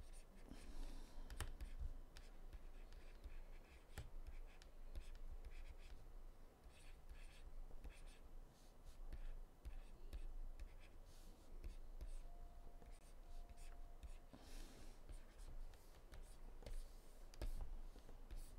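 Faint scratching and tapping of a pen stylus on a drawing tablet as lines are sketched, in many short strokes and ticks over a low steady hum.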